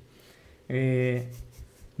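A man's voice holding one level 'ehh' for about half a second, a little under a second in, in a small quiet room; faint low bumps follow.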